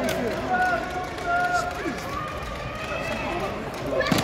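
Volleyball crowd in a large arena: many spectators' voices overlapping, calling out and chattering, with no single voice standing out.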